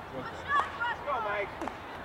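Several voices shouting and calling out at once, overlapping, with no clear words, loudest about half a second in. Two short sharp knocks stand out among them.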